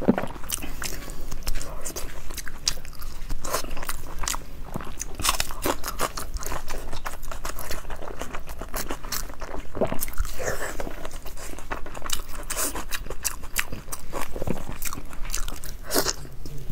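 Close-miked chewing and biting of braised sausage, with many quick wet mouth clicks and smacks throughout.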